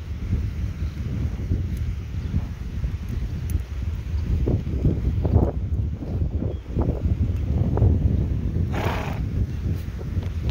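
Pony walking on grass under a rider: irregular soft hoof and tack knocks over a steady low rumble of movement and wind on the microphone, with a short breathy rush of noise near the end.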